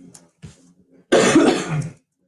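A person coughs once, loudly and close to the microphone, about a second in; the cough lasts close to a second.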